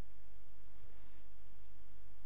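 A few faint computer keyboard keystrokes, clicking about one and a half seconds in, over a steady low electrical hum.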